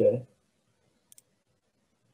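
A man's voice finishing the word "okay", then quiet with a single faint, short click about a second in.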